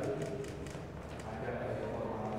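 Camera shutters clicking several times in quick, irregular succession, over a low murmur of voices.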